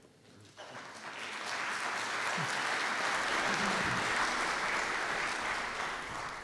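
Audience applauding: the clapping starts about half a second in, swells over a second or two, holds steady, and eases off near the end.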